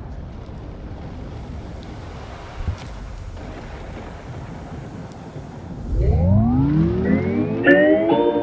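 Steady low murmur of an arena crowd, then about six seconds in a loud rising synth sweep, like a siren winding up, over the PA system as a boxer's ring-walk music starts.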